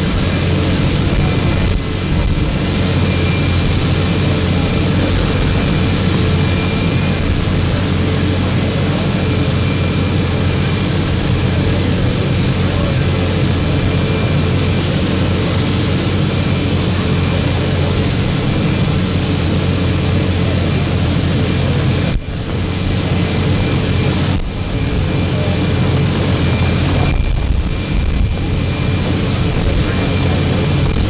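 Jet aircraft engines running on the airfield apron: a loud, steady rumble with a constant high-pitched whine over it, dipping briefly twice in the last third.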